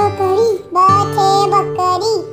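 A children's song: a high voice sings a short-phrased melody over a steady instrumental backing.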